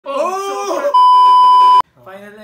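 A raised voice cries out, then a loud, steady censor bleep lasts just under a second and cuts off sharply, masking a swear word.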